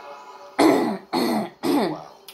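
A woman coughing three times in quick succession to clear her throat, the first cough the loudest.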